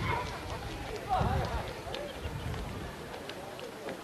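Indistinct talking voices, loudest in a short stretch of speech about a second in.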